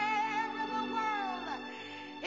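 A woman singing one long held note with vibrato over backing music; the note glides down and stops about one and a half seconds in while the accompaniment carries on.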